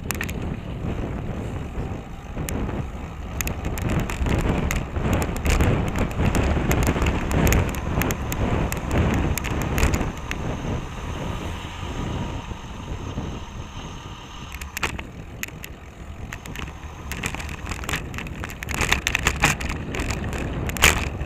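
Wind buffeting the microphone of a bike-mounted camera, with a deep rumble and road noise from a moving bicycle and many small clicks and rattles over the road surface. Louder through the middle stretch.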